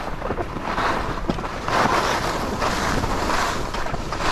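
Skis sliding and scraping over groomed snow, a hiss that swells and eases every second or so, with wind buffeting the microphone.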